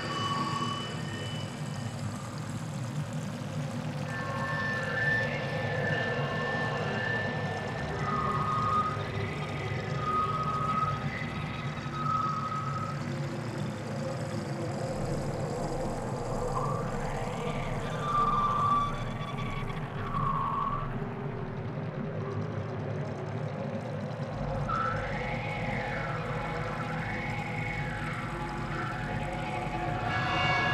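Abstract soundscape of siren-like tones that glide up and down about once a second, in runs near the middle and near the end, mixed with held whistle-like tones, over a steady low drone.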